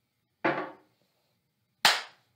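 Two sharp knocks about a second and a half apart, the second louder and sharper, each dying away quickly.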